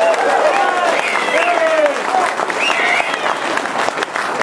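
An audience applauding, with voices calling out over the clapping.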